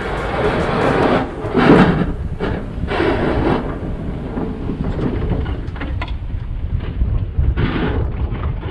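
Ford F-250 pickup with a V-plow running as it backs down a driveway: a steady low rumble with several loud, rushing surges in the first few seconds and another near the end.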